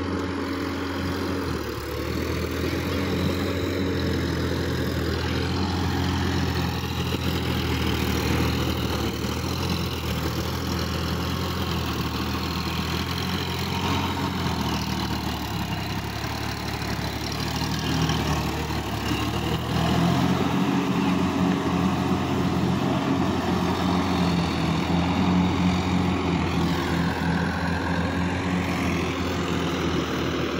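Sonalika tractor's diesel engine running under load as it churns through a flooded, muddy paddy field. The engine note steps up and gets a little louder about two-thirds of the way through.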